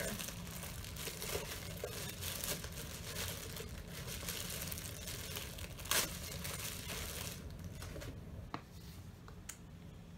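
Packaging rustling and crinkling as a small diffuser is worked out of its box, with one sharp snap about six seconds in. The handling quietens after about seven seconds, leaving a few light clicks.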